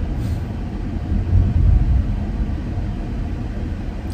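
Low, steady rumble of road and engine noise inside a moving car's cabin.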